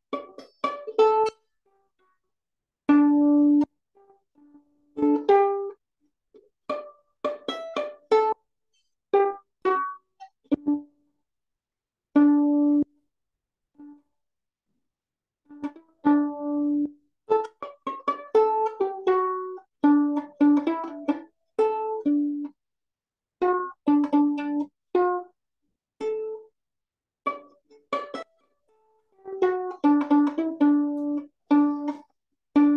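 Single notes plucked on a small string instrument, picked out one at a time in short, halting runs with pauses between them, as when working out a tune note by note. Heard through a video call, the sound cuts off abruptly to silence in the gaps.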